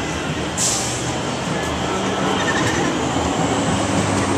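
City street noise dominated by a heavy vehicle's engine running steadily, with a short hiss about half a second in.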